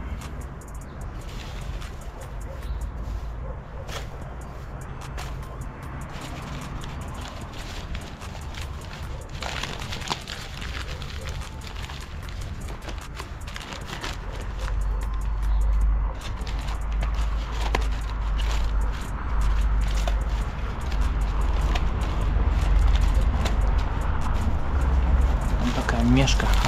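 Newspaper crinkling and rustling as it is twisted and crumpled by hand, in many short crackles. Under it runs a low rumble on the microphone that grows louder about halfway through.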